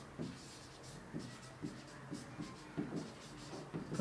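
Marker pen writing on a whiteboard: about ten short, faint strokes as a line of words is written.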